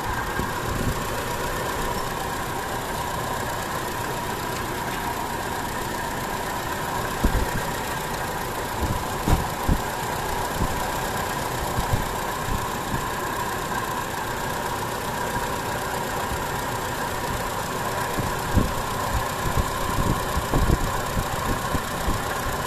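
Mitsubishi Adventure's gasoline engine idling steadily with the air conditioning on while it warms up, with a slight shake at idle that the mechanic judges normal. A few short, soft low thumps come in the middle and again near the end.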